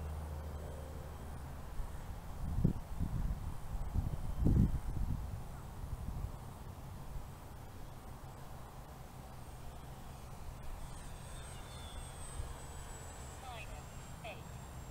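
Electric motor and propeller of an RC P-51 Mustang foam warbird droning in flight, its pitch falling slowly near the end as it passes. A few low rumbles come a few seconds in.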